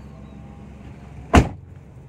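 A car's front door pulled shut hard from inside the cabin: one sharp slam about a second and a half in, with a brief tail. The door trim is lined with glasswool sound deadening to cut trim vibration, and the owner judges the result fairly good.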